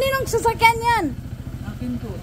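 Motor scooter engine idling with a steady, fast low pulse.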